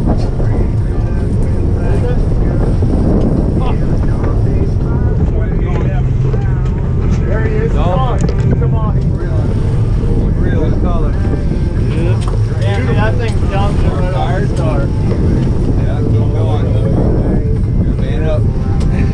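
Fishing boat's engines running steadily under way, with wind buffeting the microphone and water rushing past the hull; voices call out over the noise.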